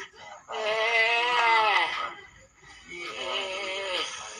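A voice holding long, wavering, sung-like tones: one loud drawn-out phrase from about half a second in lasting over a second, then softer held tones near the end.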